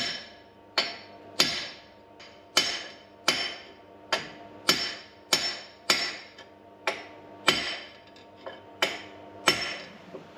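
A hammer drives a forged steel gib key into the keyway that locks a large flat belt pulley to its line shaft. There are about fourteen steady blows, roughly one every 0.7 s, and each leaves a short metallic ring.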